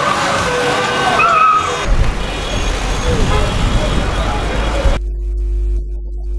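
Street noise of a celebrating crowd: many voices shouting over running motorcycle engines and a low rumble. About five seconds in it cuts off suddenly to a low steady hum.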